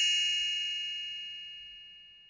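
A single struck chime ringing out, its bright high tones fading away steadily: the read-along book's page-turn signal.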